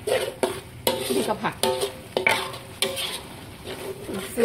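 A spatula stirring and scraping thick curry paste around a large metal wok, with repeated knocks and scrapes against the metal while the paste sizzles as it is dry-fried.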